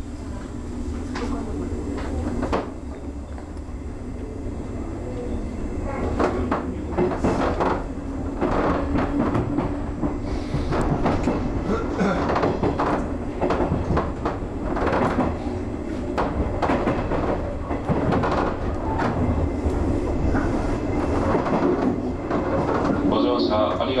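JR 201 series electric train heard from its driving cab, picking up speed and then running steadily. There is a continuous rumble and hum, with many clacks as the wheels pass over rail joints and points. The running noise grows louder over the first several seconds and then holds.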